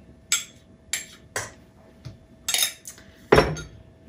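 A stainless steel mixing bowl knocking and clinking about six times as bread dough is worked in it, with the loudest, a heavier thump, near the end.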